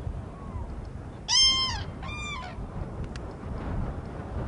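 Common cranes calling: two loud calls about half a second each, back to back a little over a second in, after a fainter call near the start. Wind rumbles on the microphone throughout.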